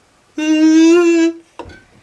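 A person's voice holding one steady, sung note for about a second, then a short knock as an egg is struck against a bowl.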